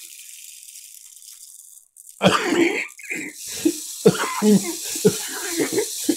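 Plastic rain stick being tilted, its beads trickling down the tube with a steady high hiss. The hiss cuts off just before two seconds in, then laughter and a man's voice come in with the trickle going on under them.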